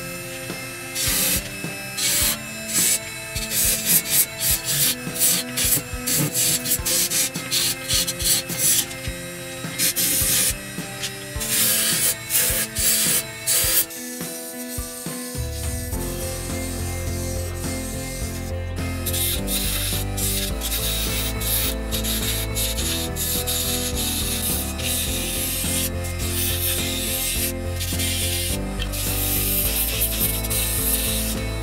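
A steel turning chisel cutting a spinning blank of damp birch on a wood lathe: rough scraping cuts in quick, irregular strokes. About halfway the sound breaks off briefly, then goes on as a steadier cut over a deeper hum.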